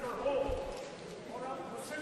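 Faint voices murmuring in a large chamber between the speaker's sentences, with a short dull knock about half a second in.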